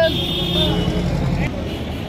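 Motor vehicle running close by, a steady engine sound with a high held whine over a low rumble, dropping away about a second and a half in.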